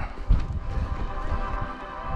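Footsteps on a dirt track, with faint background music coming in.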